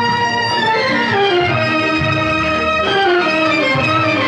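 Music from a 1956 Hindi film song: a melody moving in falling steps over a busy, steady accompaniment.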